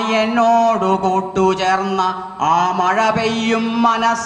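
A man's voice chanting a Malayalam poem in a melodic recitation, holding long steady notes in phrases with brief breaks between them.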